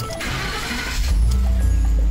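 2013 Ford F-150's engine starting: about a second of starter cranking, then the engine catches and settles into a steady low idle.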